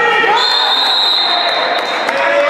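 Spectators and players shouting and cheering as a goal goes in at a futsal match. About half a second in, a long, steady, high whistle blast begins over the shouting and lasts about a second and a half.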